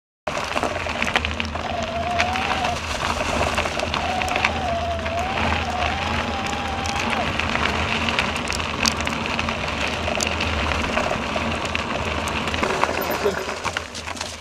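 Wind rushing over the microphone of a handlebar-mounted camera and knobbly mountain bike tyres rolling fast over a frosty gravel trail: a steady, loud rushing noise full of small crackles that cuts in abruptly just after the start. A faint wavering high tone rides over it from about one and a half to seven seconds in.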